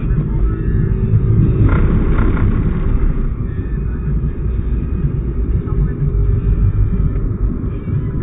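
Steady low rumble of a car's engine and tyres on the road, heard from inside the moving car's cabin.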